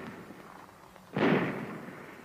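A single shot from a .45 ACP Thompson submachine gun about a second in, its report dying away over most of a second.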